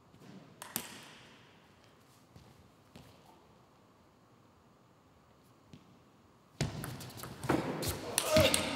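Table tennis ball: a few separate light ticks of the ball on bat or table while the serve is prepared, then, from about six and a half seconds in, a fast rally of ball strikes and bounces mixed with the thumps of players' feet on the court floor.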